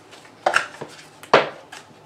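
Moonology oracle card deck being handled and shuffled by hand, with two sharp clacks about a second apart and a few fainter taps.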